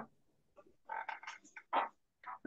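A faint voice coming through a video-call connection, giving a short reply about a second in.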